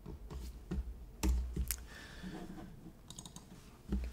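Scattered clicks and taps on a computer keyboard and mouse, with one louder click and thump about a second in and a quick run of light keystrokes near the end.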